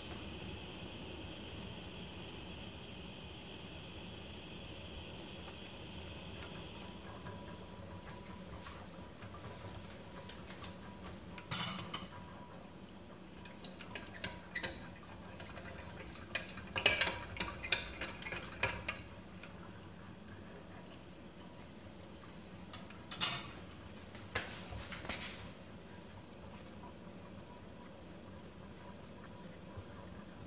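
A spoon stirring coffee in the glass upper bowl of a Bodum Pebo vacuum coffee maker, clinking against the glass in scattered taps, the sharpest about twelve and twenty-three seconds in. A steady hiss from the heating brewer stops about seven seconds in.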